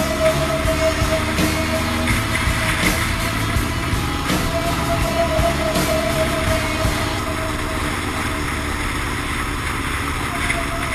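Yamaha R1 inline-four engine running at low town speed, with a steady high whine over the rumble that breaks off briefly about four seconds in.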